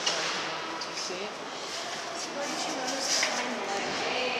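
Indistinct background chatter of several people talking, over steady room noise.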